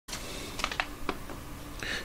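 A few soft clicks over a faint steady hiss and a low hum.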